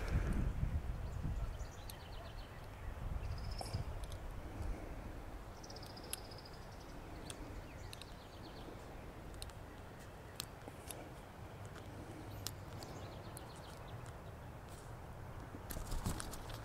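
A few small, sharp clicks now and then over a quiet background: a dog toenail trimmer snipping at the white tip of a quail's overgrown upper beak, taking several tries because the clippers are not very sharp. Faint short bird chirps come in between.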